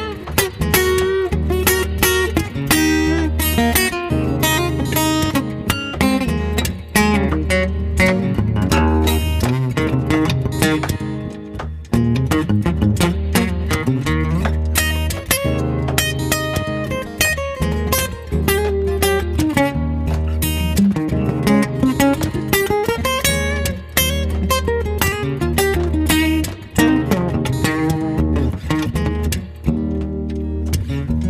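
Steel-string acoustic guitar played solo without vocals, strummed chords mixed with picked single-note melody lines.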